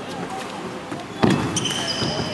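Badminton footwork on a wooden court: a heavy thud of a foot landing about a second in, followed by high rubber-sole squeaks, over spectators' chatter.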